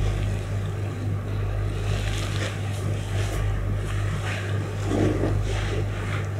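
A steady low hum runs throughout, under soft, irregular rustling of cloth and mattress as the body is pressed and stretched during a Thai massage.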